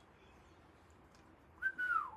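A single whistled note near the end, held briefly and then falling in pitch.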